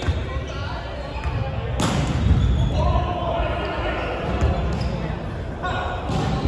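Basketballs bouncing on a hardwood gym court in a large, echoing hall, with one sharp knock about two seconds in and voices calling out.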